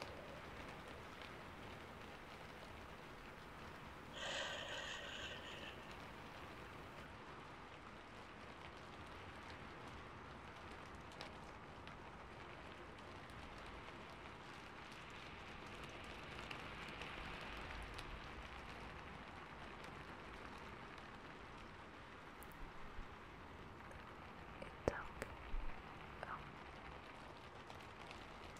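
A single soft whisper about four seconds in, over a faint steady hiss, with a few soft clicks near the end.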